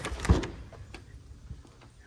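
A house door thudding shut about a third of a second in, followed by a few faint knocks.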